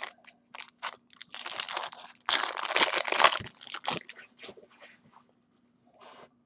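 Foil wrapper of a trading-card pack crinkling and tearing open, an irregular run of crackling that is densest in the middle and dies away about four and a half seconds in.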